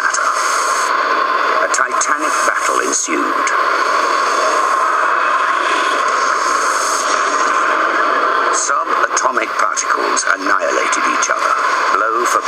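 Tinny, narrow-band television soundtrack carrying a steady rushing noise, with voice-like fragments breaking in about three-quarters of the way through.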